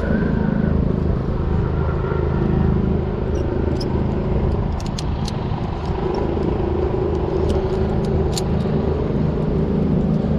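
Helicopter running close by, a loud steady rumble with a pulsing low end. A few light metallic clinks come through in the middle, from carabiners and rope gear being handled.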